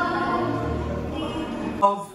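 Slow music with choral singing, held notes fading gradually; it breaks off abruptly near the end with a short sharp sound.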